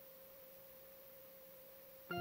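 Near silence: faint room tone with a single thin, steady pitched tone held throughout.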